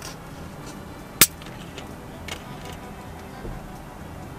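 Plastic screw cap of a carbonated Fanta bottle being twisted open, with one sharp click about a second in as the seal breaks. Faint background music underneath.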